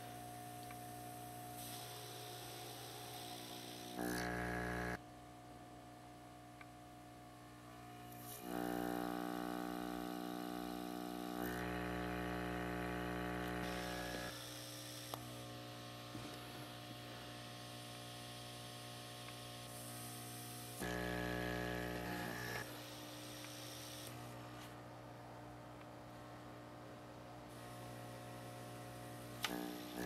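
Small vacuum pump of a hand-held component pickup tool humming steadily, turning louder and buzzier for a stretch three times.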